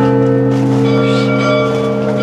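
A large church bell tolling for a funeral, its deep tone ringing on steadily.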